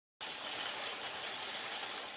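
Cartoon sound effect of a hospital stretcher's wheels rolling as it is pushed along: a steady noise that starts suddenly just after the start and slowly fades away.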